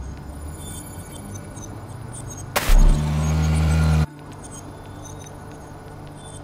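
Dark film soundtrack: a low sustained drone, broken about two and a half seconds in by a sudden loud low hit with a rumble that holds for about a second and a half, then cuts off abruptly.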